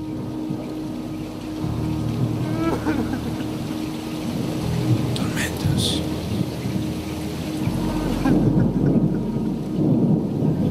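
Thunderstorm: rain falling steadily with rolling thunder, the rumble growing louder near the end.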